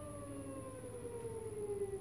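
Nissan Leaf electric traction motor, run unloaded on a test bench by its motor controller fitted with a replacement control board, whining as it spins down, its pitch falling steadily as the shaft slows.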